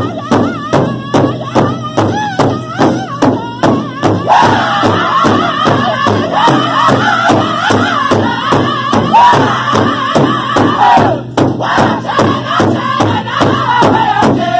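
Powwow drum group singing a northern-style song over a large hand drum beaten in unison with padded sticks, about three even beats a second. A lone lead voice sings high at first; about four seconds in the whole group joins in full, high-pitched chorus.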